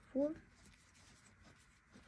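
Faint rustle of acrylic yarn drawn over a 5 mm crochet hook as double crochet stitches are worked, after one counted word.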